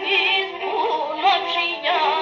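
Pontic lyra (kemençe) bowing a quick, ornamented dance melody over a steady drone note.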